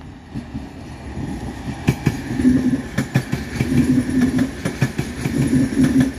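VR Sm3 Pendolino electric train passing at close range, its wheels clicking over rail joints and points. It grows louder about two seconds in as the train draws level, with a low rumble swelling every second or so as the bogies go by.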